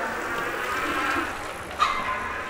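Small moped passing close by with a steady running noise, then a sudden, loud horn-like blast near the end that settles into a steady held tone.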